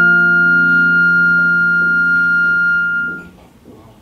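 A flute holds a long high final note over a sustained harp chord, and both stop together about three seconds in, closing the piece.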